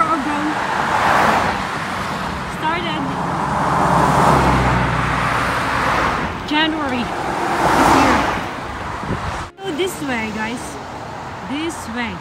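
Cars passing by on a busy road one after another, three swells of tyre and engine noise about three seconds apart, the middle one with a deeper engine rumble. After a brief cut near the end, quieter traffic sound.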